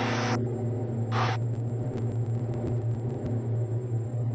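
Steady low drone of a Diamond DA42-VI's twin Austro AE300 turbo-diesel engines at takeoff power on the climb-out, with a brief hiss about a second in.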